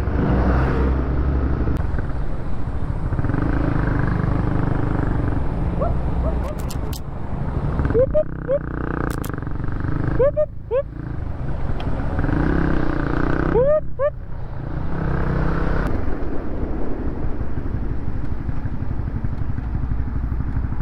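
2018 Honda CB150R's single-cylinder engine running under way in traffic, with wind noise over the mic. The engine note rises briefly several times as it revs, and there are a couple of short clicks.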